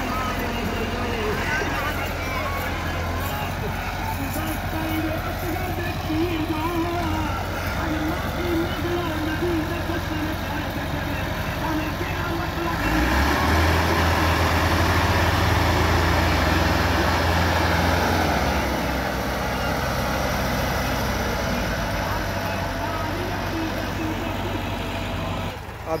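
Two Massey Ferguson diesel tractor engines running in low gear, the throttle opening harder for about five seconds in the middle as they strain to push a stuck, heavily loaded trolley free, then easing back. Men's voices call out over the engines.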